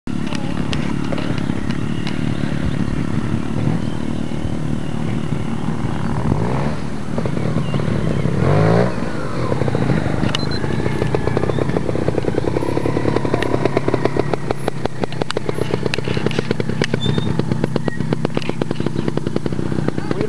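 Motorcycle engine running steadily close by, with a short rise in revs about eight seconds in.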